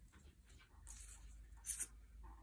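Torn paper strips rustling and scraping faintly against a paper sheet as they are handled and pressed down. Two brief sharper rustles stand out, the louder one near the end.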